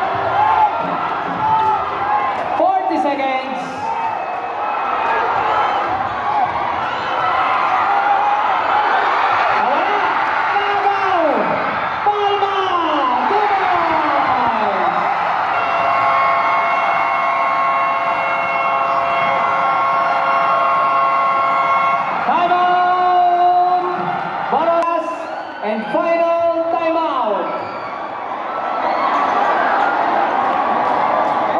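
A packed gymnasium crowd shouting and cheering at a tense basketball game finish, with long falling cries. In the middle, a steady horn blast holds for about six seconds, and more horn tones follow a little later.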